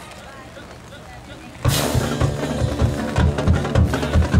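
Low crowd murmur, then about one and a half seconds in a college marching band comes in suddenly and loudly, with its full brass sustaining over a drumline beating a steady rhythm of sharp snare and bass drum hits.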